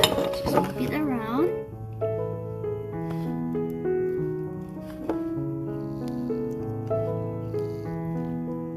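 Background music of slow, held keyboard-like notes. In the first second and a half a short, wavering, gliding voice-like sound sits over it.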